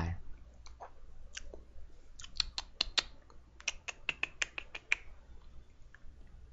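Light clicking of computer keys being typed. A few scattered clicks come first, then two quick runs of several keystrokes each, about two seconds in and again near four seconds.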